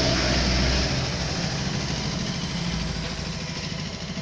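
Steady low mechanical hum over background noise, with a deeper rumble that drops away about a second in.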